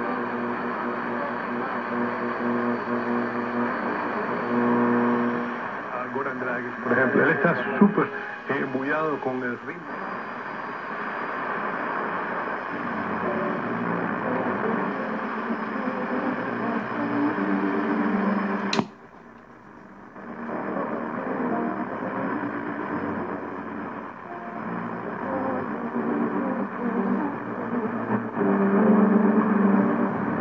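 Hammarlund HQ-100A tube communications receiver being tuned across the band, its audio heard through a small speaker: a broadcast voice under static, with steady whistles and tones. Sliding whistles come a few seconds in as the dial passes over signals, then a sharp click about two-thirds of the way through, after which the sound briefly drops before the reception comes back.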